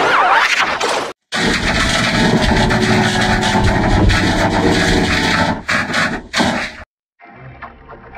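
Heavily distorted, edited logo music, loud and dense. It cuts out abruptly for a moment about a second in. It cuts out again near the end and comes back much quieter.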